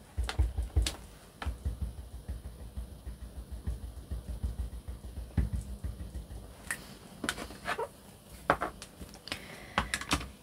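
A small ink dauber dabbed quickly onto clear stamps: a rapid run of soft, low taps, several a second, for about the first five seconds, then a few scattered clicks.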